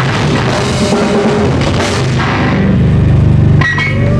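Live metal band playing loud: distorted electric guitars, bass and drum kit with cymbals. Near the end the band holds a heavy low chord, which cuts off suddenly.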